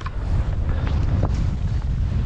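Wind buffeting the microphone of a skier's camera while skiing: a steady low rumble with a few brief sharp clicks.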